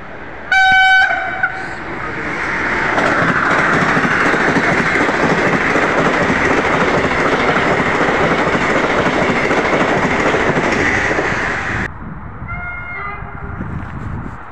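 Sapsan (Siemens Velaro RUS) high-speed electric train gives one short horn blast, then rushes past at speed with a loud, steady roar of wind and wheels lasting about ten seconds. The roar cuts off suddenly, and a fainter horn sounds briefly near the end.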